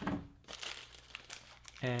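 A small cardboard box being opened and a clear plastic parts bag crinkling as it is handled, in faint scattered crackles.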